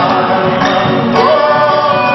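Live folk music in the form of a gato: acoustic guitars, bandoneón and bombo legüero, with several voices singing together in harmony.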